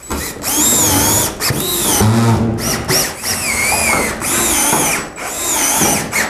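Cordless drill driving screws into a plastic ceiling inlet's frame: several runs of motor whine with short pauses between them, the pitch sagging and rising as each screw bites and seats.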